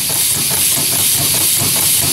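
Homemade compressed-air engine built from a pneumatic ram cylinder, running at low air pressure: a steady hiss of air with a fast, even mechanical rhythm.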